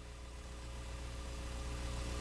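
Steady low hum with a few faint steady tones above it and light hiss, slowly growing louder: background hum from the hall or its sound system during a pause in speech.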